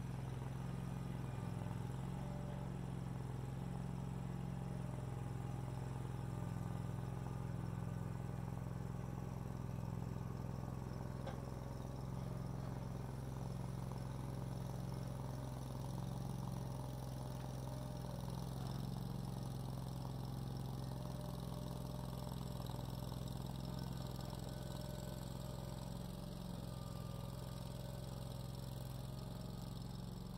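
Vermeer CTX50 mini skid steer's engine running at a steady pitch while the machine moves a dump trailer hitched to its bucket, getting slightly fainter near the end.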